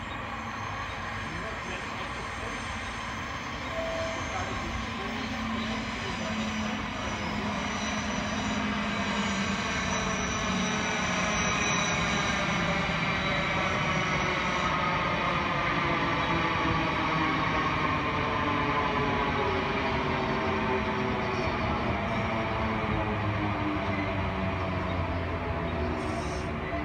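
Electric multiple-unit passenger train approaching and running past close by, growing louder from about four seconds in. A whine from the train falls slowly in pitch as it goes by.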